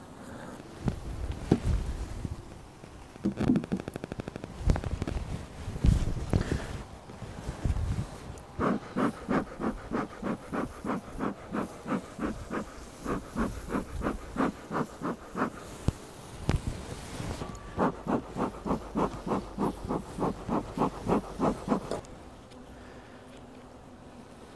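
A beekeeper's bellows smoker pumped in quick repeated puffs, about three a second, in two long runs, each puff with a short reedy note. Before that come scattered knocks and scrapes of a hive tool as the hive box is prised open.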